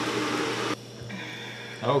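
A steady hiss cuts off abruptly about a third of the way in. Quieter room tone follows, and a man's voice starts near the end.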